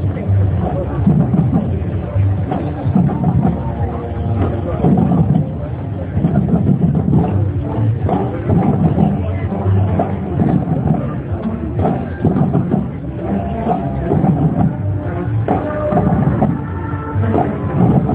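A high school marching band playing, with drums beating under the brass and held brass notes in the last few seconds. The sound is dull, with little treble.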